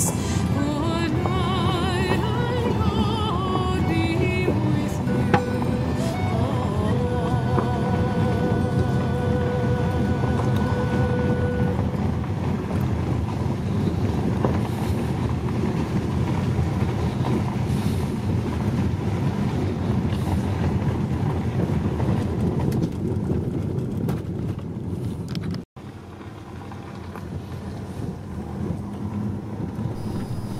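Music with a wavering, vibrato-laden voice fading out over the first several seconds, over the steady low rumble of a car driving slowly on an unpaved road. The rumble goes on alone, cuts out abruptly a few seconds before the end and comes back quieter.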